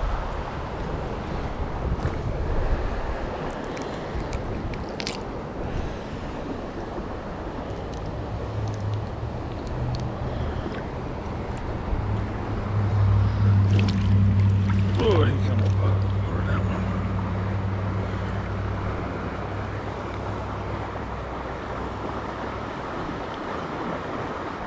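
Stream water running, a steady rush, with a low steady drone that comes in about eight seconds in, is loudest around the middle and fades near the end.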